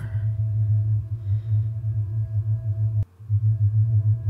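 Dark ambient drone music: a loud low hum that pulses slightly, with faint held higher tones above it. It cuts out for a moment about three seconds in and comes back.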